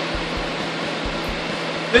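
Fan running steadily: a rush of air with a faint low throb repeating about three times a second.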